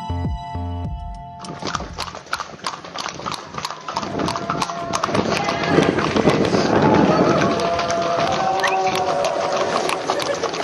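Electronic music cuts off about a second and a half in. Then several horses' hooves clatter quickly and irregularly on a paved street, with people's voices calling over them in the middle part.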